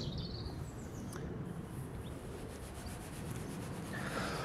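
Faint rubbing of a small metal-tipped tool being wiped on a wooden table top, over a quiet outdoor background with a low rumble.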